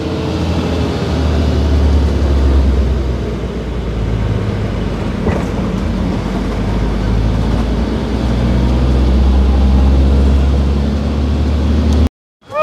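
Bus diesel engine droning heavily from inside the passenger cabin as the bus climbs a steep road, its pitch shifting a few times.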